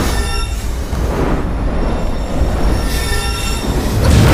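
Dubbed fantasy fight sound effects for a staff swung through the air and magic energy being cast: a shrill, metallic ringing whine twice, at the start and about three seconds in, over a constant low rumble.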